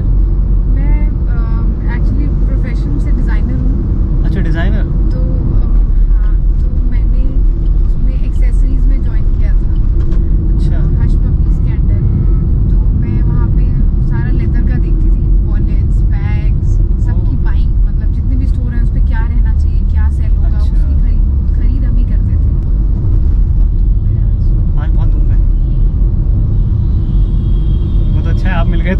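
Steady low engine and road rumble heard inside the cabin of a car being driven. The rumble is the loudest sound throughout, with a faint steady hum near its top.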